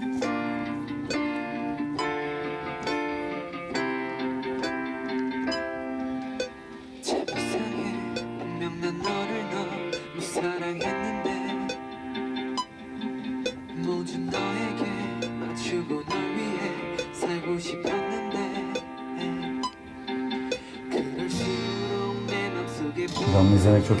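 Electric keyboard played with a piano sound: a steady, unhurried run of sustained chords and melody notes.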